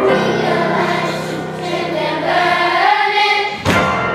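Children's school choir singing a spiritual together, the voices holding long sustained notes. A short sharp sound cuts in near the end.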